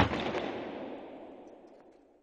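A single loud bang, followed by an echoing tail that fades away over about two seconds before cutting off to silence.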